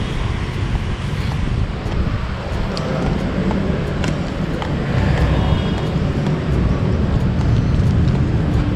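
Steady low rumble of city traffic heard outdoors, with no single event standing out.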